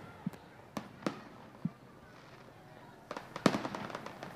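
Faint fireworks bangs and pops: a few single reports in the first two seconds, then a quicker cluster of pops about three seconds in.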